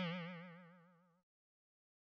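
The dying tail of a comic music sting: a single held note with a fast, even wobble in pitch, fading out within about the first second and followed by dead silence.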